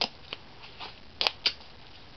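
Duct tape being pulled and torn off the roll by hand: a few short ripping bursts, the two sharpest close together just past the middle.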